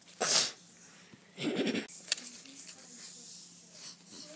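A child's voice making a short breathy burst, then a second, lower and rougher vocal burst about a second and a half later: mouth noises voicing a toy horse acting up.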